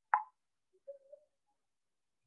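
A single short, sharp pop just after the start, followed by a faint brief sound about a second later.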